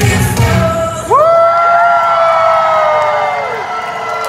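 Music with a beat for about the first second, then a group of young children's voices rising together into one long, high held shout that trails off near the end.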